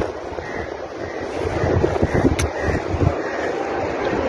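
Wind buffeting the microphone: an uneven, gusty rumble and rush, with one sharp click about two and a half seconds in.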